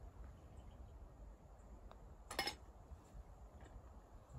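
Short tap-in putt: a faint click of the putter striking the golf ball about two seconds in, then a brief, louder rattle as the ball drops into the cup.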